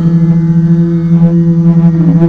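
A man singing one long, loud held note into a handheld microphone, the pitch steady with only a slight waver.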